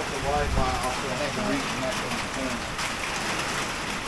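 Heavy hurricane rain falling steadily, with a faint voice speaking under it for the first couple of seconds.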